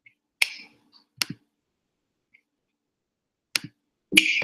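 A few sharp, short clicks: one about half a second in, a quick pair just after a second, and another near the end.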